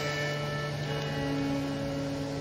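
Background music: a soft chord of steady held notes, with another note joining about a second in.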